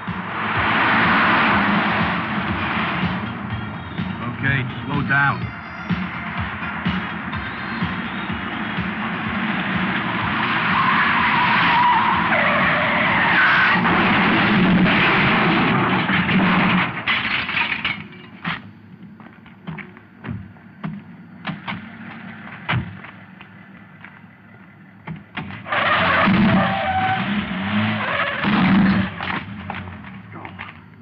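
Cars being driven hard in a chase, engines running and tyres skidding on the road. The driving noise drops away about eighteen seconds in, leaving scattered knocks, and swells again near the end.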